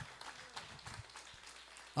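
Faint congregational applause: a patter of scattered, irregular hand claps.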